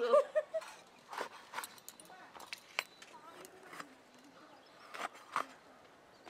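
Sparse, light clicks and knocks, about seven spread unevenly across the stretch, with the tail of a woman's word at the very start.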